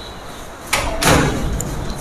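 Cardboard carton and its plastic-wrapped contents being handled as it is unpacked. Two sudden rustling, scraping noises come about 0.7 and 1 second in, the second louder, followed by more rustling.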